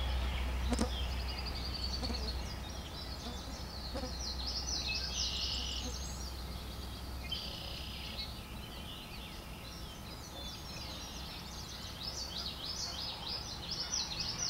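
Small birds chirping and trilling high-pitched, over and over throughout, above a low steady rumble that eases after the first couple of seconds.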